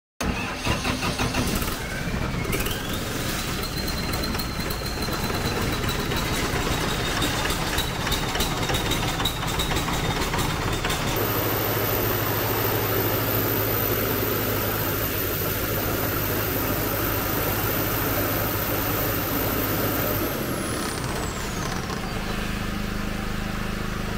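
Shangchai 50 kW diesel generator set's engine starting up and running steadily. A whine rises about two seconds in and stops about eleven seconds in. After that the engine runs with a steadier, deeper hum.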